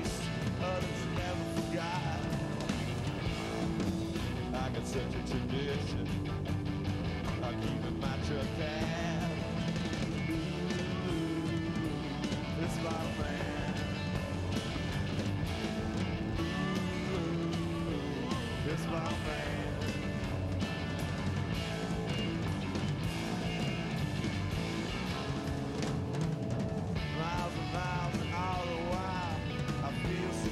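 A live rock band playing: electric guitar, bass guitar and a drum kit with cymbals. A male voice sings over the band near the end.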